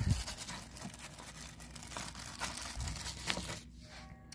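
Plastic packaging rustling and tearing as a new oil drain plug is unwrapped by hand, soft and irregular, with a few small clicks.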